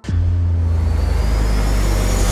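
A deep rumble that starts suddenly with a hit and then holds steady, with a faint rising whine above it from about halfway through: a cinematic sound-effect drone.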